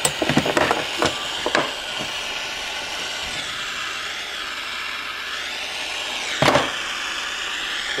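Steady hiss of an acetylene soldering torch's flame. Scrapes and clicks come from the hot soldering copper being handled in the first two seconds, and there is one louder scrape or knock about six and a half seconds in.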